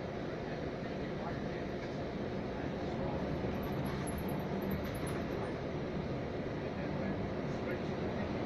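Steady engine and road noise inside a moving vehicle's cabin: a low rumble with a faint hum, growing a little louder about three seconds in.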